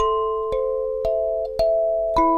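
Plate kalimba, its metal tines mounted directly on a flat wooden board, plucked by thumb: four notes about half a second apart, each ringing on under the next with an even, clear tone.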